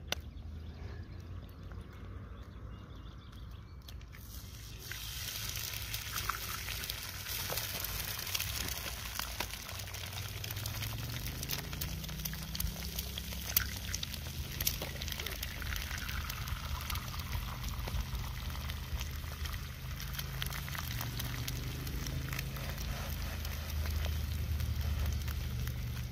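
Eggs frying in a cast iron griddle pan: a steady sizzle with small crackling pops that sets in about four or five seconds in, over a low rumble.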